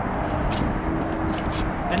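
Steady low outdoor rumble with a faint steady hum, and one brief high scrape about half a second in.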